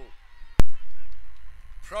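A single sharp, loud knock of a cricket ball striking the batsman's pad on a delivery given out LBW, followed by a low rumble.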